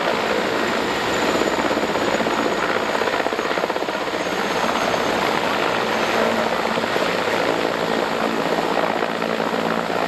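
Mil Mi-17 helicopter hovering low over water, its turbines and rotor running steadily. A fast, even rotor chop sits over a faint high turbine whine, mixed with the hiss of the downwash spraying the river surface.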